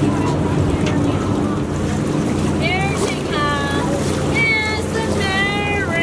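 Moored riverboat's engine idling with a steady low hum, with wind on the microphone. Voices of people walking by come in from about halfway.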